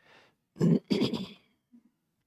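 A man clearing his throat into a close microphone: two short, rough rasps about half a second in, after a soft breath.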